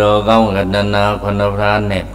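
A Buddhist monk's voice chanting Pali recitation into a microphone: a low, nearly level chant held in long syllables with brief breaks.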